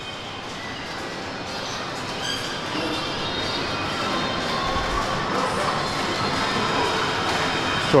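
Arcade machines' jingles and music mixed with distant chatter, a steady jumble of sound that grows gradually louder as the arcade comes closer.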